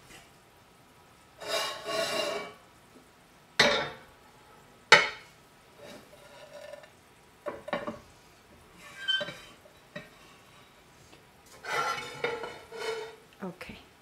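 Stainless steel saucepan and lid handled on a gas stove's grate: metal scraping with a ringing edge, and sharp clanks, the loudest about five seconds in, with smaller clicks later and another stretch of scraping near the end.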